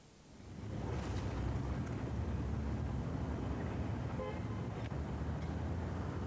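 Traffic noise fading in over the first second and settling to a steady low rumble, with a brief tone about four seconds in.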